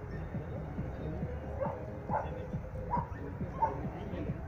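A dog barking about four times in the second half, over background music.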